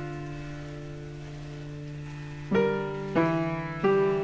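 Background piano music: a held chord slowly fading, then three new chords struck in quick succession in the second half.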